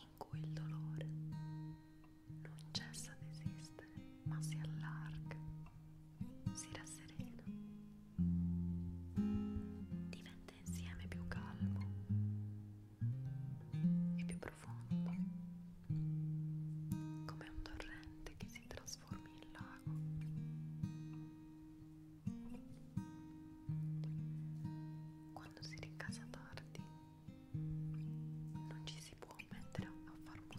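Slow, gentle acoustic guitar music: single plucked notes, each struck and left to ring and fade, in an unhurried picked pattern.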